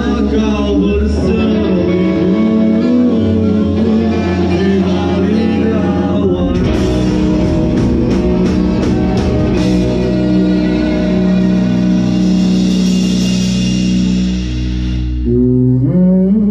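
Live rock band playing through a PA: electric guitars, drum kit and a lead singer. A run of cymbal hits comes about halfway through, then a cymbal wash that breaks off shortly before the end, where the singing rises back in.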